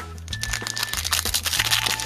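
Foil wrapper of a Pokémon trading-card booster pack crinkling and tearing as it is opened by hand, with background music playing underneath.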